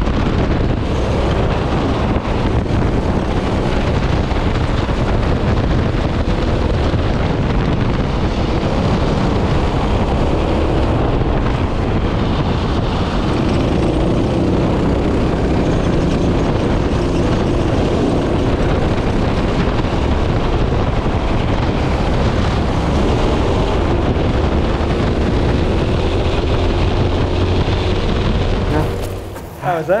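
Twin-engine ProKart racing kart at speed, heard from an onboard action camera: a loud, steady engine note that rises and falls with the throttle, mixed with wind buffeting the microphone. It cuts off near the end.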